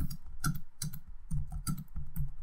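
Computer keyboard being typed on: a quick, uneven run of separate key clicks as spaces are keyed into lines of code.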